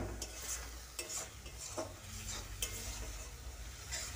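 A spatula stirring and scraping thick tomato-and-spice masala around a kadai, with short irregular scrapes against the pan and a faint sizzle from the frying masala. The stirring keeps the masala from sticking to the bottom of the kadai.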